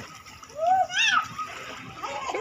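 Swimmers splashing in shallow sea water, with a loud high-pitched cry from one of them about half a second in that swoops up sharply in pitch before it stops.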